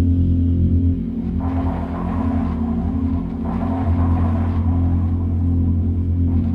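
Experimental electronic music played live through a PA: a deep, steady bass drone, with a rougher, hissing layer that swells in about a second and a half in and then rises and falls in waves.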